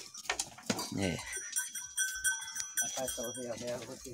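Goats in a pen bleating briefly, amid their shuffling about.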